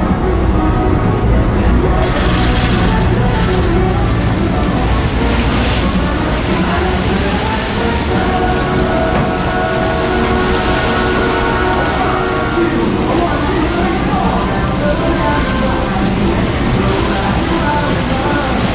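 Low, steady rumble of a ferry's engines under indistinct voices, with music playing along.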